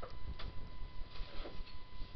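A few faint clicks of a computer mouse over steady room noise, with a thin steady whine in the background.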